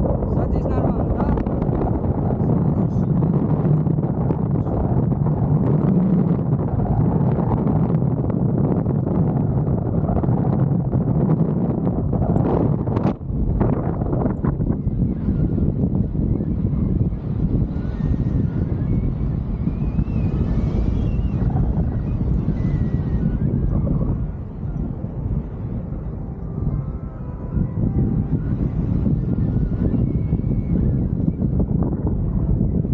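Wind buffeting the microphone of a camera on a tandem paraglider in flight: a steady rumble that drops briefly about halfway through and eases for a couple of seconds later on.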